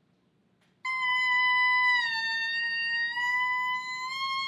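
Clarinet mouthpiece and reed blown on their own, without the instrument, holding one high sustained tone that begins about a second in. The pitch sags a little in the middle and comes back up. This is the daily check that the reed is in good condition.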